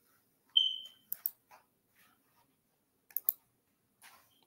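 Sharp clicks, mostly in quick pairs about two seconds apart, with one short, high electronic beep about half a second in.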